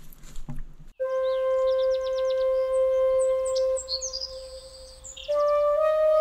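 Background music: a flute holds one long note from about a second in, with bird chirps above it. Near the end the melody steps up in pitch.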